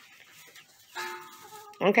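A chicken gives a short, steady-pitched call that steps up in pitch near its end, about halfway through.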